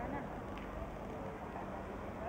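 Street ambience: people talking at a distance over a steady low hum of traffic.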